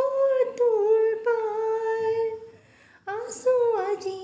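A woman singing unaccompanied, carrying the tune in long wordless held notes that glide between pitches; the voice stops a little past two seconds in and picks up the next phrase near three seconds.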